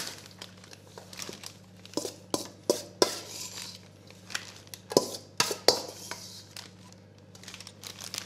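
Metal spoon scraping and clinking against a stainless-steel mixing bowl as vegetable filling is scooped into a plastic bag, the bag crinkling. The sharpest clinks come in two clusters, about two to three seconds in and again around five seconds in, over a low steady hum.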